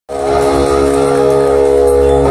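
Symphonic metal band playing live through the PA: a single distorted chord held steady, cutting in abruptly at the start.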